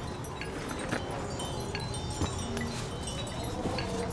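Hanging chimes tinkling lightly and irregularly: scattered, short, high clear notes over a soft steady background.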